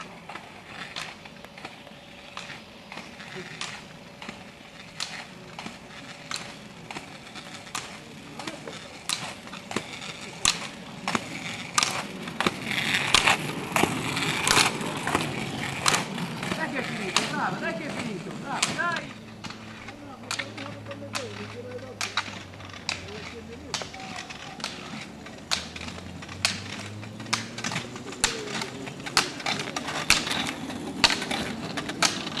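Roller skiers' poles striking the asphalt in a repeated clicking rhythm, with the rolling of roller-ski wheels on the road; loudest from about a third to halfway through as a skier passes close.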